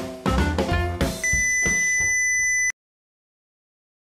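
A short music jingle ends, and about a second in a steady, high-pitched 2 kHz beep from the clybot C6 robot's speaker starts, the tone it sounds while the surroundings are quiet. The beep cuts off abruptly after about a second and a half, leaving dead silence.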